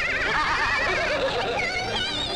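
Several cartoon voices cackling together in high, wobbling, whinny-like laughter.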